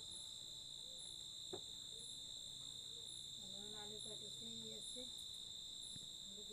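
Crickets trilling steadily at night, one continuous high trill, with a second, higher insect call pulsing about once a second.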